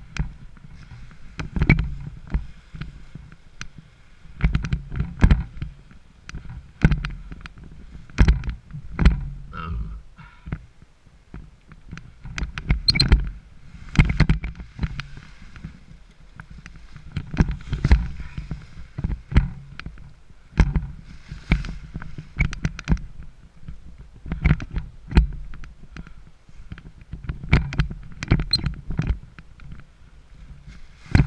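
Paraglider wing's nylon canopy fabric rustling and crinkling as it is handled and gathered on the ground, in irregular bursts with low bumps and rumbles.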